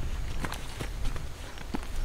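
Footsteps on a dirt yard, about six uneven steps over a low rumble.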